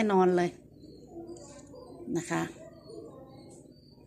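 Faint low bird calls in the background, in the gaps between a woman's two short spoken phrases.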